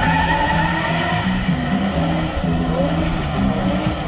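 BMW E39's V8 engine held at high revs during a burnout donut, with the rear tyres squealing and skidding as they spin on asphalt.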